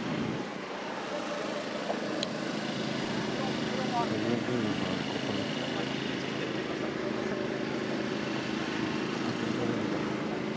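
Race-circuit background: car engines running out on the track, steady throughout, with indistinct voices mixed in.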